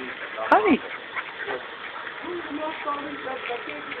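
A dog gives one short, high-pitched bark about half a second in.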